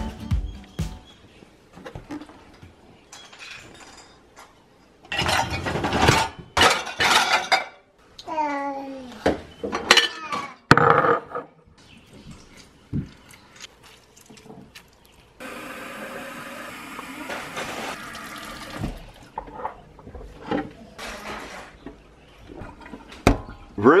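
Kitchen tap running for about three and a half seconds, filling a glass mason jar, after scattered knocks and clinks of a wooden cupboard door and glassware on a tiled counter.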